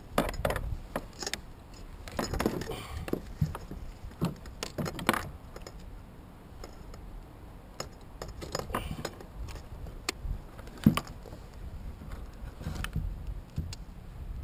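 Fishing gear being handled and untangled in a kayak: scattered clicks, rattles and knocks, with one sharp knock about eleven seconds in.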